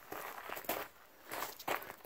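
Footsteps crunching on crushed-stone gravel, a few uneven steps.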